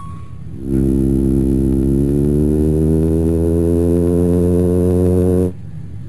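A loud, low, sustained electronic synthesizer drone, one steady rich tone from a radio-drama sound effect. It swells in just under a second in and cuts off suddenly about five and a half seconds in.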